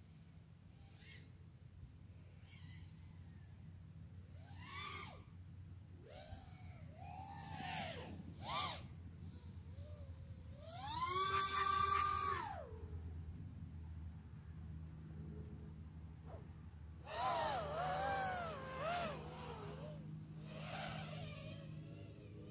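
A dog whining in a series of high calls that rise and fall. The longest and loudest comes about eleven seconds in, and a wavering run of calls follows near the end.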